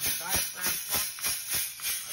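Diaphragm pump running as it transfers 15W-40 oil, its exhaust hissing in quick, even pulses about three times a second with a low thump on each stroke.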